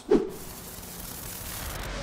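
A steady hiss of noise that builds slightly: a transition sound effect leading into a section title card.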